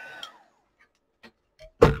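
Handheld heat gun switched off: its fan whine slides down in pitch and dies away about a quarter second in. A few light clicks and a sharper knock near the end follow as it is put down.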